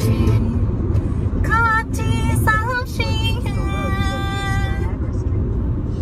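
Steady low rumble of a car driving, heard inside the cabin. Over it a voice makes a few short sounds and then holds one steady note for about two seconds, from about three seconds in.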